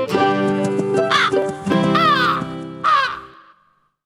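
Three crow caws, about a second apart, over a short music jingle; the jingle then fades out to silence near the end.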